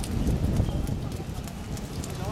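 Outdoor five-a-side football on a wet court: a low, uneven rumble with scattered light taps of players' footsteps and ball touches on the wet surface.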